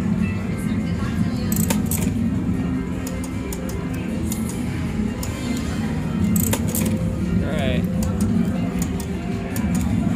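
Casino slot-floor din: a steady background of chatter and slot-machine music, with the clicks and electronic chimes of a video slot's reels spinning and stopping.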